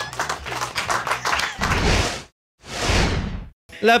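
Laughter, then two whoosh sound effects about two seconds in, each swelling and fading, with a moment of dead silence between them: an edit transition.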